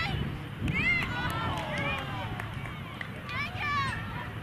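Shouted calls from players on a soccer pitch, high voices in short bursts heard from a distance, over a steady low rumble.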